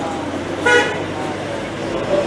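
A vehicle horn gives one short toot about two-thirds of a second in, over a man's voice.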